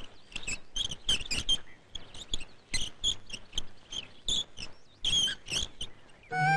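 Metal well pulley squeaking as a rope is hauled over it, a run of short, high squeals in uneven clusters with brief pauses.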